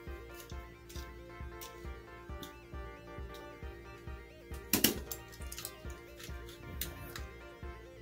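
Background music playing under a run of light clinks and rattles of die-cast toy cars as a hand digs through a jar full of them, with one sharp clink about five seconds in the loudest.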